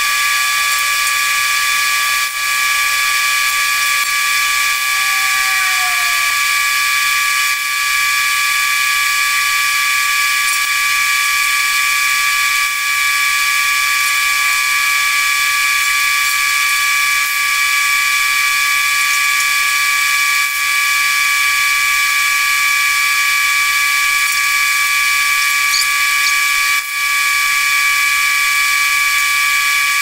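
A steady high-pitched machine whine over a loud hiss, holding one pitch and level throughout, with a few brief dips.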